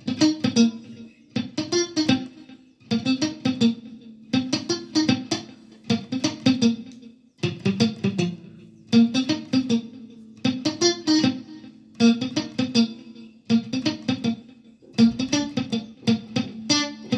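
Electric guitar played with a muted picking technique: short damped notes in a repeating phrase, about one phrase every second and a half, with a brief pause between phrases.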